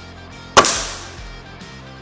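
A single shot from a Gamo Whisper Fusion IGT 5.5 mm gas-ram break-barrel air rifle with an integrated suppressor, about half a second in: one sharp report that echoes briefly before dying away.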